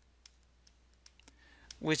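Faint, scattered clicks and taps of a stylus on a tablet screen during handwriting, about half a dozen spread over the first second and a half, then a voice starts speaking near the end.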